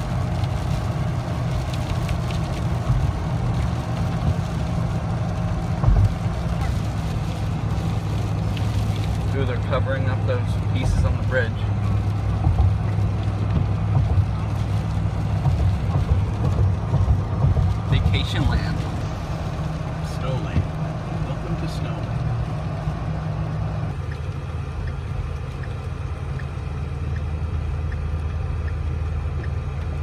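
Steady low engine and tyre drone inside a car's cabin while driving on a wet highway. The drone shifts in tone about two thirds of the way through.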